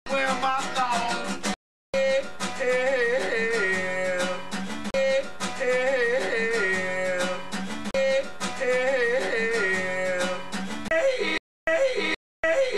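Acoustic guitar being strummed under a singing voice that repeats a short melodic phrase. The sound drops out abruptly to silence for a moment at hard cuts about two seconds in and again near the end.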